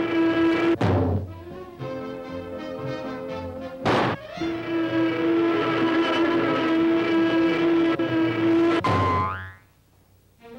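Orchestral cartoon score with a held note, cut by sudden comic sound-effect hits: one about a second in, a louder burst at four seconds, and a third near nine seconds that slides downward before the music drops out.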